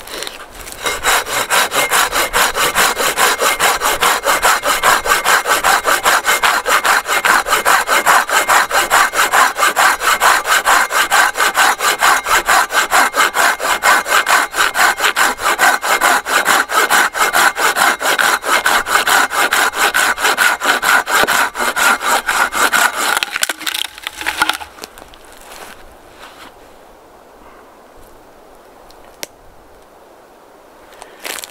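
Silky BigBoy 2000 folding pull saw, its 14-inch blade cutting a three-inch log in quick, even back-and-forth strokes that bite mainly on the pull stroke. The sawing stops a little over 20 seconds in, with a last couple of strokes a second later as the cut goes through.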